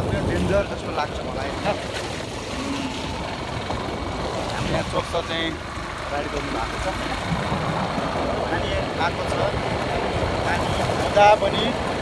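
Wind and road noise from a moving motorcycle, heard from the pillion seat: a steady low rumble of wind on the microphone and engine, with snatches of voices and a brief louder burst near the end.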